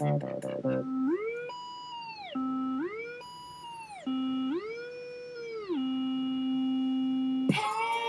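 Electronic song breakdown: the beat and plucked notes drop out within the first second, leaving a lone synthesizer note that slides up about an octave and back down several times. The full track comes back in near the end.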